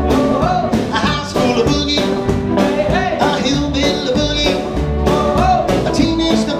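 Live rockabilly band playing a fast boogie: electric guitars over upright bass and a drum kit keeping a steady beat.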